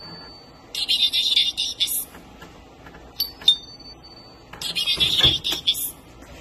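An Evangelion pachislot machine's door-open alarm sounds in two bursts of high-pitched electronic warbling, with a steady beep and a couple of clicks between them. It plays only through the cabinet's upper speakers, since the lower speakers' wires have been unplugged to make the alarm much quieter.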